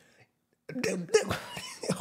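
A man's hard laughter, breaking into cough-like, breathy sounds, starting after a short pause, under a second in.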